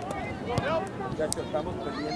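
Indistinct voices of players, coaches and spectators calling out around a youth soccer pitch, over a steady outdoor background.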